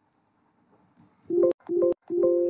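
Near silence for about a second, then two short, steady electronic tones in quick succession, each cut off sharply.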